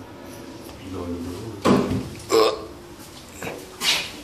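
Two short, loud vocal sounds from a person, a little under a second apart near the middle, while a key unlocks an apartment front door and the door is opened.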